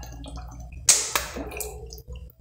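Coconut milk being poured from a plastic bottle into a pot of milk, with two sharp knocks about a second in, over a steady low hum.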